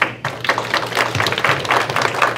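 Audience applauding: many hands clapping in a dense, steady run.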